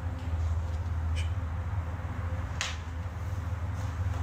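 Low steady rumble with three short clicks or knocks over it: one about a second in, a louder one past halfway and a faint one near the end. These are the unexplained noises the explorer hears.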